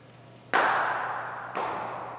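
Cricket bat striking a hard cricket ball with a loud crack that rings on in a reverberant indoor hall, followed about a second later by a second, softer knock as the ball hits something.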